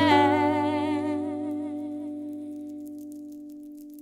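Acoustic guitar's closing chord strummed once and left to ring, fading steadily, while a woman's last held sung note with vibrato tails off in the first second or so.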